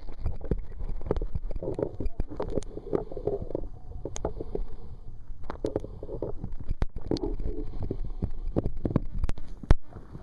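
Muffled underwater noise picked up by a submerged camera: a low rumble with many scattered clicks and knocks. It drops away near the end as the camera comes out of the water.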